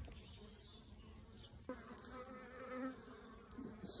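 Honeybees buzzing faintly around an open hive's frames: a low hum, with a wavering buzz coming in about halfway through.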